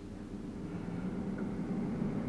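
Air fryer running just after being switched on: a steady low hum from its fan that grows slightly louder as it spins up.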